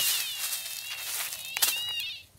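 Metal detector sounding a steady, high, slightly wavering tone with its search coil held over a freshly dug hole, the sign of a metal target beneath it. A short knock comes about one and a half seconds in.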